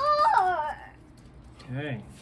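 A young child's brief high-pitched vocal sound, its pitch wavering and falling. A man's voice starts near the end.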